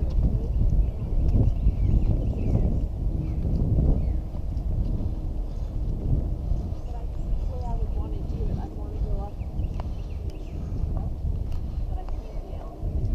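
Wind rumbling on a body-worn GoPro's microphone, with the footsteps of hikers walking on a dirt trail.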